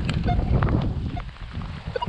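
Minelab X-Terra Pro metal detector giving a few short, scattered beeps as its coil sweeps over wet bark mulch: false signals (falsing) rather than a real target. Footsteps on the mulch run underneath.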